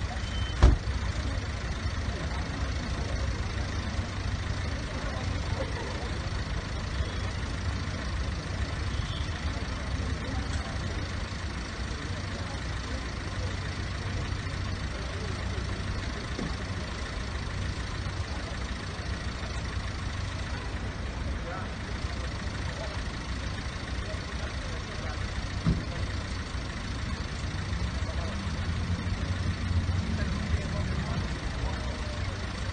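Steady low rumble of an idling vehicle engine, with bystanders' voices murmuring in the background. A sharp knock about a second in.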